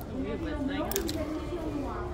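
Indistinct voice speaking, with a short sharp click about a second in.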